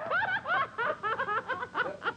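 A woman laughing in quick, high-pitched bursts.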